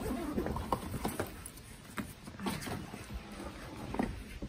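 Handling noise of a fabric DeWalt tool backpack being opened and rummaged through: irregular rustling with scattered knocks and clicks.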